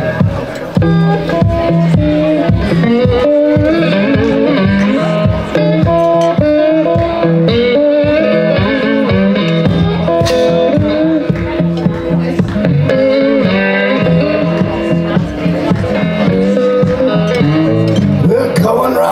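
Electric guitar playing a driving blues train-song groove over a steady beat, with harmonica from a neck rack played above it.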